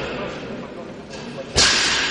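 A single sharp, loud crack about one and a half seconds in, echoing through a large hall, over a background of talk.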